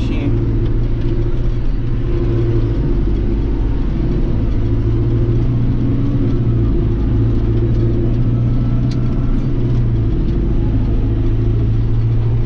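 Tractor engine running steadily under way, heard from inside the cab as a constant low drone.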